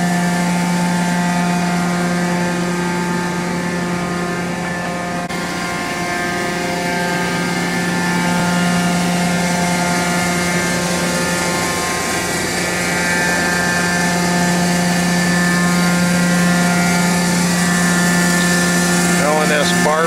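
Okuma Multus B400-W CNC lathe running under power: a loud, steady hum from its pumps, motors and cooling fans, with one strong low tone and a stack of higher tones above it.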